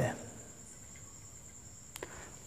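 Faint room tone in a pause between speech, with a thin, steady high-pitched tone and a brief click near the end.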